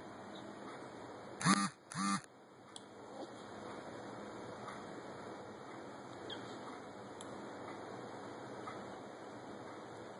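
Two short vocal sounds, each about a quarter second long and half a second apart, over a steady hiss.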